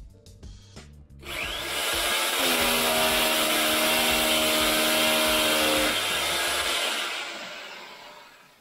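A 1200 W corded rotary hammer drilling into a wall. It starts about a second in with a rising whine, runs loud and steady with a held motor tone, and winds down near the end.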